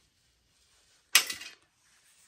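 One sharp metallic clack about a second in, with a short ringing tail, as a sheet-metal shield is handled against a steel frame and perforated plate; otherwise near silence.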